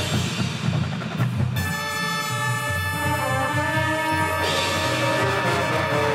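Marching band playing. Low drum hits pulse throughout, and from about a second and a half in the band holds a full chord that changes near four and a half seconds.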